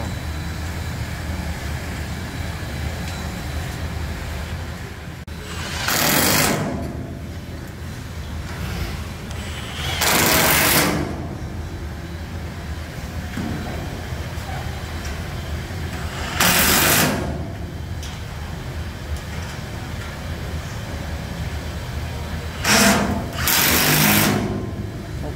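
Cordless impact wrench running in short bursts to tighten bolts on an aluminum frame brace: about five runs of under a second each, the last two close together near the end, over a steady low hum.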